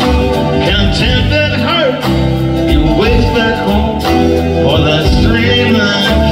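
Live band playing an instrumental break in an uptempo country song, with upright bass under a lead line that bends in pitch.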